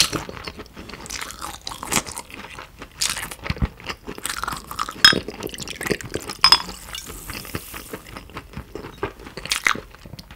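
Close-miked chewing of raw beef, an uneven run of wet, sticky mouth clicks and smacks with a few sharper crunchy bites, the loudest about five and six and a half seconds in.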